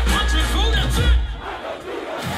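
Live band playing loud through a concert PA with heavy bass, mixed with a crowd yelling. About two-thirds of the way through the bass drops out and the crowd noise carries on.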